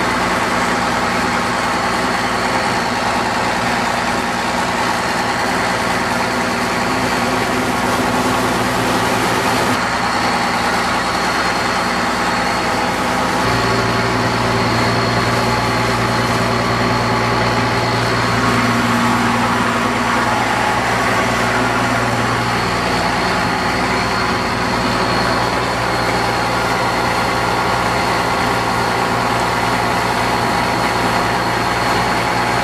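Boat motor running steadily under way, over a constant rushing noise; its low drone grows stronger from about a third of the way in until about three quarters through.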